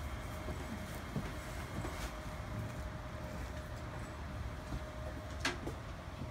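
Steady low room hum with a faint steady tone, broken by a few light clicks about one, two and five and a half seconds in.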